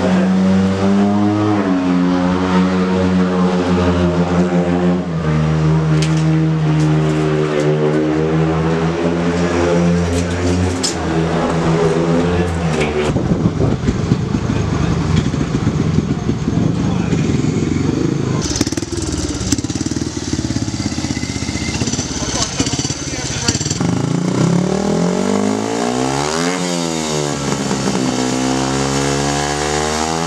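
Speedway motorcycle engines running and revving, their pitch holding and then shifting in steps. The sound turns rougher for a stretch in the middle. Near the end a bike's pitch falls and then climbs again as it revs or passes.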